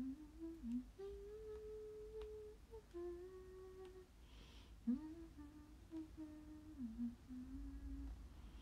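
A young woman softly humming a melody with her mouth closed, holding notes and stepping between pitches, with a short break about four seconds in; she is humming along to a song playing in her earphones.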